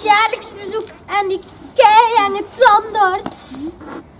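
High children's voices speaking in short, expressive phrases with wide swings of pitch, part of a spoken poem recitation in Dutch, with a short hiss late on.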